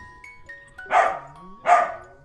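Two dog barks, one about a second in and one near the end, over light music with held notes.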